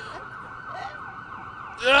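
Emergency-vehicle siren going by, loud enough to halt the performance; a man's voice cuts in with "uh" near the end.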